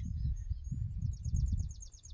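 A small bird singing a rapid, high trill of evenly spaced notes, starting about halfway through, over a low rumble on the microphone.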